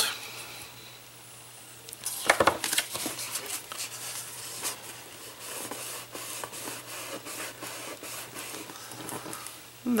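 Paper being handled at a craft desk: rustling and crackling with light taps, starting about two seconds in, as a paper cut-out is creased with a bone folder and pressed onto a paper-covered cardboard box.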